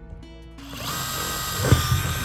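Makita cordless impact driver spinning a thin drill bit down into the RV roof, making a small pilot hole. The motor starts about half a second in and then runs at a steady pitch.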